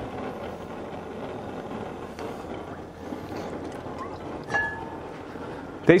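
Olive oil poured into a hot stainless frying pan on a gas burner: a steady hiss, with one short ringing clink about four and a half seconds in.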